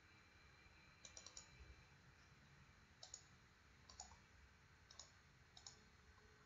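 Faint computer mouse clicks: a few scattered single clicks and quick pairs, some close together, over near-silent room tone.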